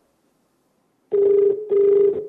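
Telephone ringback tone over a phone's loudspeaker while an outgoing call rings unanswered: a double ring of two short, steady, buzzy tones, starting about a second in.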